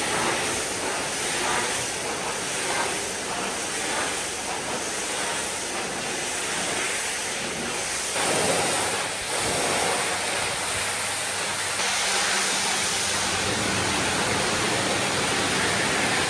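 Pressure-washer lance spraying a jet of water onto a van's bodywork and roof rack: a steady hiss of spray, which shifts in level a couple of times.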